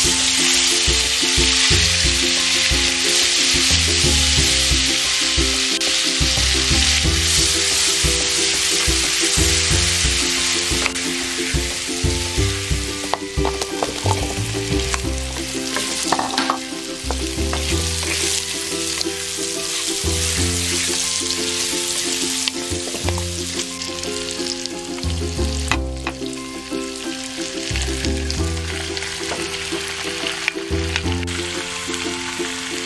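Minced garlic sizzling in hot fat in a nonstick pan while a wooden spatula stirs it. The sizzle is loudest for the first ten seconds or so, then quieter as carrot chunks are stirred through, with a few sharp scrapes and clicks from the spatula partway through.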